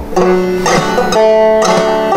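Banjo played slowly in frailing (clawhammer) style: a handful of plucked notes, a new one about every half second.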